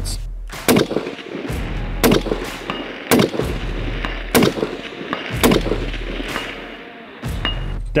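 Bolt-action precision rifle firing a string of about five shots, roughly a second apart, at long range with polymer-tipped bullets whose tips are bent over.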